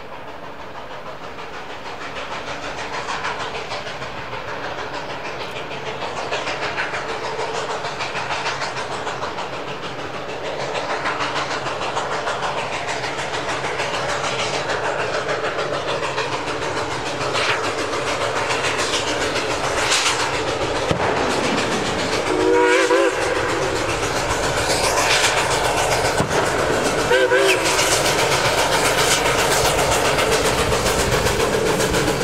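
Durango & Silverton K-28 class 2-8-2 steam locomotive 473 working hard with a train, its exhaust beats growing steadily louder as it approaches. A short whistle blast sounds about three quarters of the way through, and another brief one near the end.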